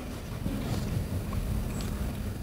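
A low, steady rumble of room noise, with no speech and no distinct event.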